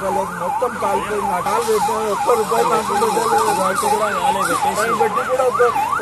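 Emergency vehicle siren on a fast yelp, its pitch sweeping up and down about two and a half times a second, loud over the voices of a crowd.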